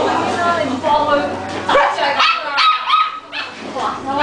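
A small dog yapping in a quick run of high-pitched barks about halfway through, over people chattering.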